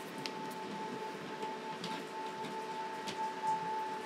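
A steady high tone from the episode's soundtrack, held throughout and swelling slightly toward the end, over a faint hiss with a few soft clicks.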